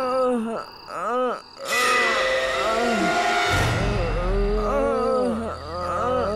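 Eerie horror background score of moaning, wailing swoops that rise and fall in pitch. A rushing whoosh comes about two seconds in, and a low rumble joins from about halfway.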